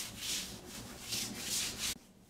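Hands rubbing thick body cream onto bare skin of the arm and leg, in several quick swishing strokes.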